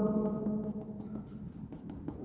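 Chalk scratching on a blackboard in many short strokes as a drawn circle is shaded in.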